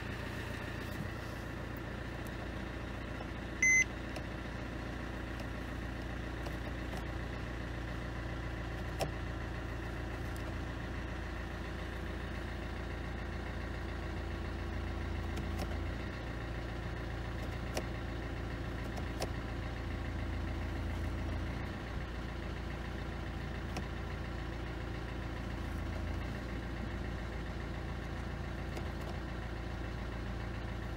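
A 2014 Mercedes-Benz E250's engine idling steadily at standstill, heard from inside the cabin, with its 7G-Tronic automatic gearbox in drive and freshly refilled with fluid. One short electronic beep about four seconds in.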